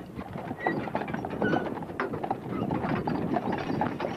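Hooves of a team of draft horses walking on a dirt road, a steady run of irregular knocks.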